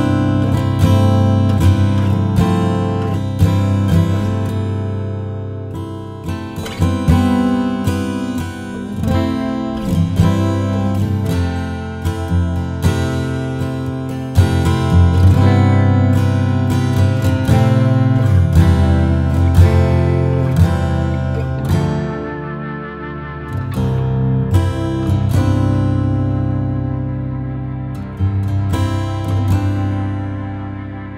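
Steel-string acoustic guitar fingerpicked in the open CGCFCE tuning, with low open strings ringing under picked notes. The playing eases briefly about two-thirds of the way through, then picks up again.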